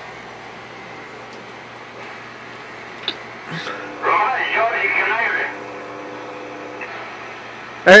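Galaxy Saturn CB base station radio on channel 31 giving out a steady hum and hiss from its speaker. From about four to five and a half seconds in, a station's voice comes through it, quieter than a voice in the room.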